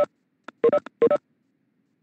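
Cisco Webex participant-join chime: short two-note electronic beeps, repeated about half a second apart, signalling that people are joining the meeting.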